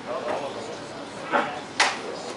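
Two sharp wooden knocks, about a second and a third in and again just before the end, from a shake table rattling a wooden tower model during a simulated earthquake run, over faint voices in a large hall.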